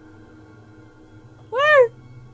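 A single short pitched call near the end, rising then falling in pitch, over a low steady hum.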